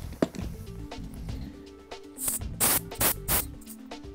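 Background music with a steady held chord. In the second half come a few short hissing bursts: air escaping from the tyre valve as the pump head is pulled off.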